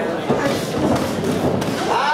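A couple of dull thuds of strikes landing between two gloved fighters in a ring, over a steady babble of shouting voices from the crowd and corners.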